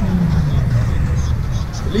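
Outdoor crowd ambience: background voices over a steady low rumble, with a low tone sliding down in pitch in the first half second.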